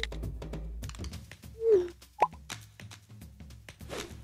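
Phone typing sound effects: a rapid run of light keypad taps over soft background music. About one and a half seconds in comes a short swooping tone, the loudest sound, then a brief sharp blip.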